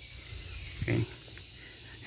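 A man's single short spoken "okay" about a second in, in a pause between sentences, over faint outdoor background.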